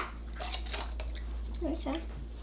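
Quiet table sounds of juice being sipped through plastic straws from plastic cups: a few faint light clicks, then a brief voice sound near the end.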